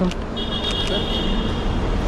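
Steady low traffic rumble of cars at a pickup curb, with one long high-pitched whistle blast that starts a moment in and lasts about a second and a half.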